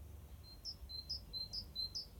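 A small songbird singing a quick two-note phrase, a lower note then a higher one, repeated about five times at an even pace from about half a second in, over a faint low outdoor rumble.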